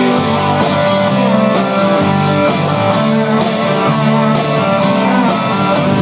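Live country band playing an instrumental stretch between sung lines: acoustic and electric guitars with a drum kit keeping a steady beat.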